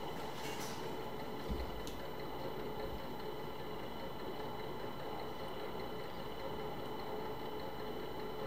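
Steady hum of electronic test equipment running, with several faint steady whines over it, and a soft low bump about one and a half seconds in.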